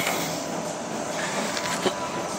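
Steady room noise of a large gym hall, with one short knock near the end.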